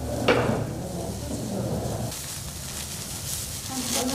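Clear plastic bags crinkling and dried leaves rustling as gloved hands stuff the leaves into the bags, with a sharp rustle about a third of a second in.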